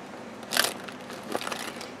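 Hands rummaging in a clear plastic zippered pouch full of pens: the plastic rustles and the pens shift, loudest once about half a second in, with a small click later.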